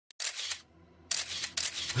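Intro sound effect: three short hissing bursts, the second and third starting sharply about a second in and half a second later, with a brief silence after the first.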